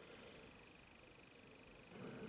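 Near silence: faint room tone with a light hiss and a faint steady high-pitched tone.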